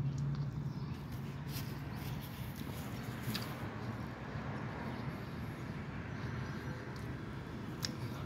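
A man chewing a mouthful of breakfast burrito, a few faint mouth clicks over a steady background hiss.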